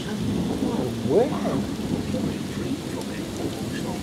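Thunder rumbling steadily through a storm, with rain falling.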